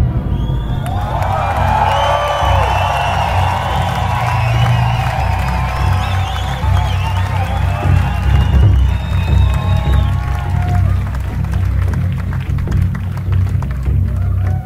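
A large crowd cheering and whooping, many voices rising and falling together, over a steady low bass from the music. The cheering thins out after about ten seconds.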